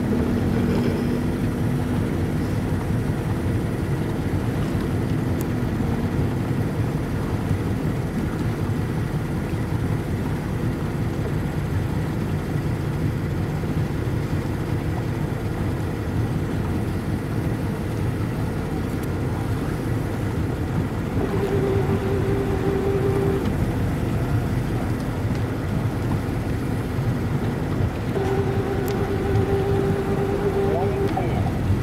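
Motorboat engine running steadily, with a low rumble and water and wind noise. A higher hum comes in twice in the last third.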